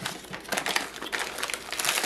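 Plastic bags of frozen food crinkling as they are handled and picked up, an irregular run of quick crackles.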